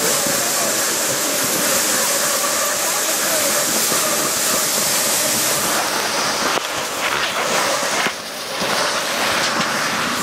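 Steady rushing hiss of a dog sled's runners sliding over snow while the team pulls, mixed with wind on the microphone; the dogs are silent as they run. The noise dips briefly about eight seconds in.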